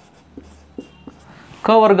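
Marker pen writing on a whiteboard in a few short, faint strokes, followed by a man's voice near the end.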